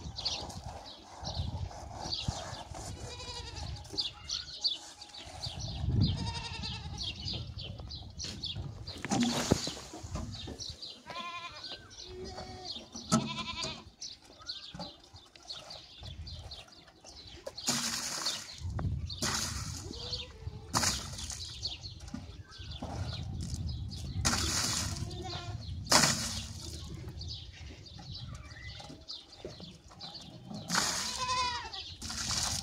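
Goats bleating on and off in short calls, with several short splashing bursts of water poured from a plastic jug.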